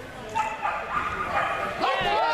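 A small dog giving short, sharp yipping barks several times while running, with people's voices breaking in near the end.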